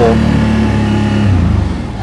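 CFMoto CForce 1000 ATV's V-twin engine pulling steadily in low range under light throttle. Its note falls away about two-thirds of the way through as the throttle eases off.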